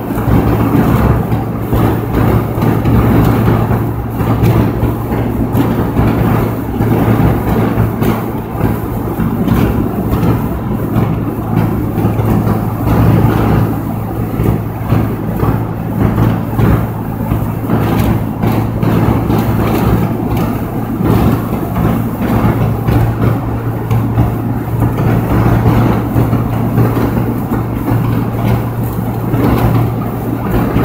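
Inside a car cruising at motorway speed: a steady low engine hum over constant tyre and wind noise.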